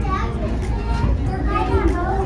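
Children's voices chattering and calling over one another, with a steady low rumble underneath.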